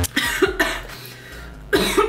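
A woman coughing: a couple of short coughs at the start and a louder one near the end, fist to her mouth.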